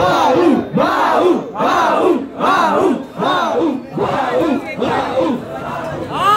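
A crowd of young men shouting a rhythmic chant in unison, one loud shout a little more often than once a second.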